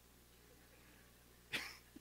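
Near silence with a faint low room hum, then about a second and a half in a short breathy burst from a man: the start of a laugh.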